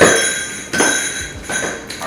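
A ceramic plate clinks sharply and rings on with a clear, fading tone, followed by a few lighter knocks against it.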